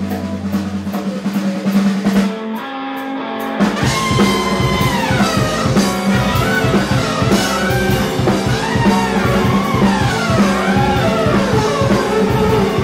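Rock band playing live through a club PA in an instrumental passage: held notes at first, then the full band with drum kit comes in about three and a half seconds in, with a sliding lead melody over a steady beat.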